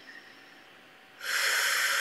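A woman's long, audible exhale, beginning about a second in and slowly fading.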